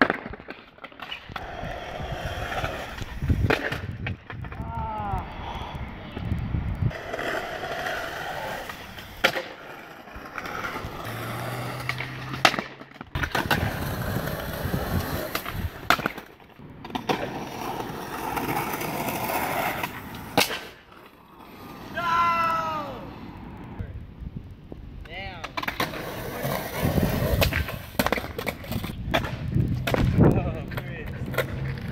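Skateboard wheels rolling on rough asphalt, broken by many sharp wooden clacks of tail pops, landings and boards slapping the pavement on bails. A few short squeaks come about five seconds in and again past the middle.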